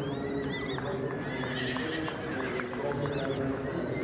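A Shire horse whinnying with a wavering call over the steady murmur of a ringside crowd, with light clinks in between.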